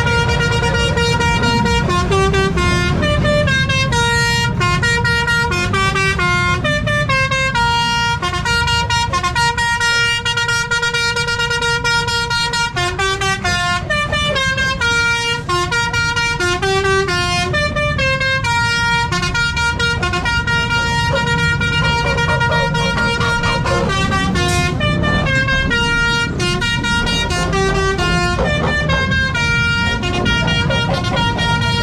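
A bus's musical melody horn playing a tune of held notes that step up and down, repeating over and over, with a steady low rumble underneath.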